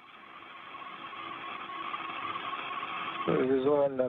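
Hiss of an open radio communications channel, growing steadily louder. A man's voice comes over the radio near the end.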